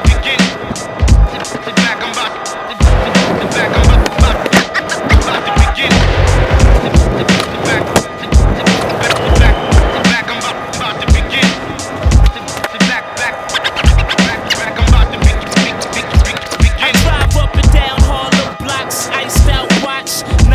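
Skateboard wheels rolling on a smooth indoor park floor, with sharp clacks of tail pops and landings. A hip-hop track with a steady kick-drum beat plays throughout.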